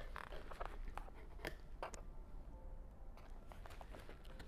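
Faint handling of a cardboard box packed with snack packets: a handful of light clicks and crinkles in the first two seconds, then only faint room sound.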